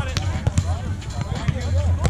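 Volleyball being struck by hands and arms during a beach volleyball rally: sharp slaps, two of them in the first half-second or so, over background voices.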